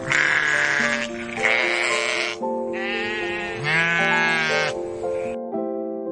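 Sheep bleating, about four calls in a row, the later ones with a wavering, quavering pitch, over soft background piano music.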